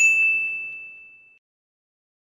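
A single bright ding from a logo sting. It is struck once and rings in one high tone that fades away over about a second and a half.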